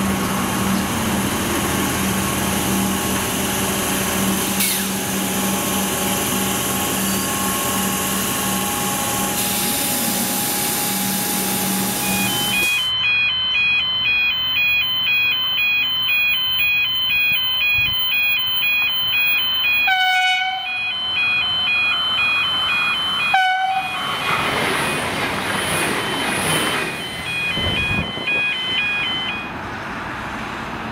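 Comeng electric suburban train with a steady motor hum. After that comes a two-tone electronic warning signal that pulses about twice a second, with two short horn blasts about three seconds apart from a VLocity diesel railcar, and then the railcar passing.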